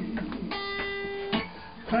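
Guitar playing gospel-song accompaniment: plucked and strummed notes, with a chord held ringing from about half a second in that fades away before the next sung line comes in at the end.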